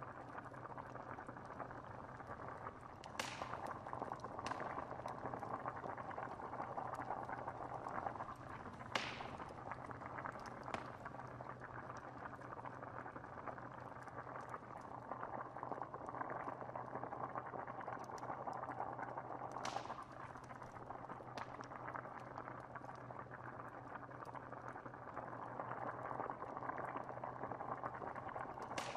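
A pot of stew bubbling steadily at a simmer, with a wood fire giving a few sharp crackles scattered through, over a steady low hum.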